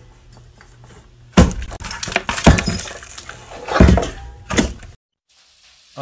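A swung desk lamp crashing down, with sounds of something breaking: four loud hits over about three seconds, starting about a second and a half in, with rattling and clinking between them.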